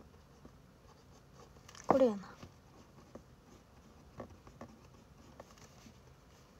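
Pen writing on paper, with faint scratches and small taps. About two seconds in comes one brief, louder vocal sound: a breath followed by a short voiced note falling in pitch, like a sigh or groan.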